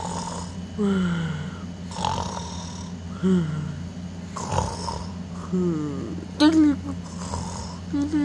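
A person's voice making mock snores in play: a string of short voiced snores, each sliding down in pitch, about one a second, some with a breathy rush of air.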